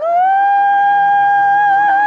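A female solo singer, in a classical style, scooping up into a long high note. She holds it steady, then lets a vibrato come in near the end, over a low sustained accompaniment.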